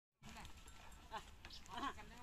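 A few faint, short voice calls about a second in and near the end, over a low steady rumble.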